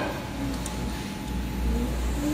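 Semi-automatic wire harness tape-winding machine running, a steady low motor hum with a faint high tone as it winds insulation tape around the wire.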